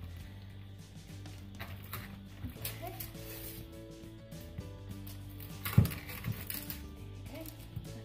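Background music with steady held notes, over a large kitchen knife cutting through a slab of still-soft caramel and mixed-nut praline on a wooden chopping board, with small clicks and one sharp knock, the loudest sound, about three-quarters of the way through.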